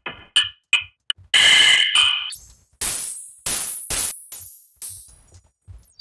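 Short noise impulses pinging a software vocoder's bank of 36 resonant bandpass filters. Each hit rings as a cluster of pitched tones and quickly decays. There are about a dozen hits, with a long loud noisy one in the second second and brighter, slower-fading high hits later on.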